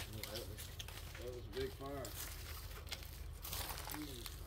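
Faint, low voices murmuring briefly, with a few soft rustles and clicks near the end.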